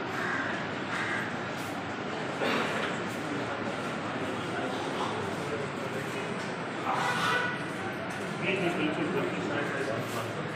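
A crowd of men talking over one another in a busy indoor corridor, a continuous jumble of voices with no single clear speaker. Louder shouts or calls stand out about two and a half seconds in, around seven seconds, and again near the end.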